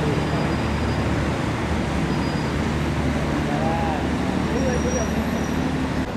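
Steady traffic and engine noise with a low hum, and faint voices in the background.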